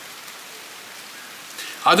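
Steady, even hiss of rain, with a man's voice starting again near the end.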